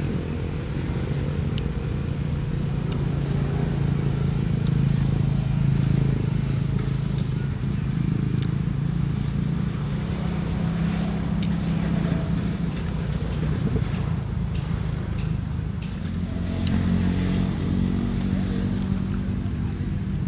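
A motor vehicle's engine running with a steady low hum, its pitch rising slightly about sixteen seconds in.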